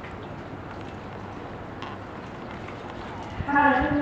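A pause in a muezzin's amplified call to prayer, with only faint open-air background, then the voice starts the next long, drawn-out chanted phrase about three and a half seconds in.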